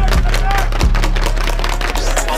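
Hip hop beat playing: deep steady bass under a melody, with fast hi-hat ticks.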